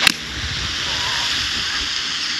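A golf club strikes sand and ball in a fairway bunker shot: one sharp impact at the very start, followed by a steady hiss.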